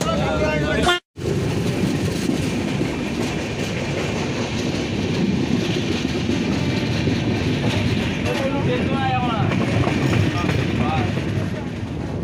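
Steady running noise of a moving passenger train heard at an open coach door: wheels rolling on the rails, with wind. Faint voices come in near the end.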